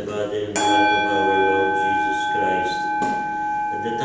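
A bell is struck once about half a second in and rings on with a clear, steady tone: the consecration bell of a Catholic Mass.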